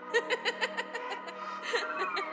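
A person's snickering laugh, a rapid run of short bursts, loudest at the start, laid over the soft melodic intro of a trap beat.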